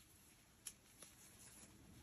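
Near silence, broken by two faint ticks about two-thirds of a second and a second in: the small handling sounds of a crochet hook working bulky cotton yarn.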